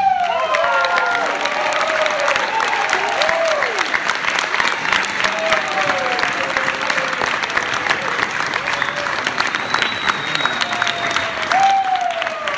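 Audience applauding and cheering, with whooping calls that glide up and down over the clapping.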